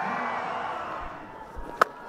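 Stadium crowd noise dying away, then one sharp crack of a cricket bat striking the ball near the end.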